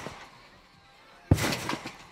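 Bare feet landing on and rebounding off an Acon garden trampoline's bed about a second and a half in: a single thud followed by a short rush of noise.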